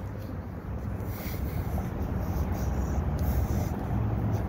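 Low steady rumble of street traffic, slowly growing louder.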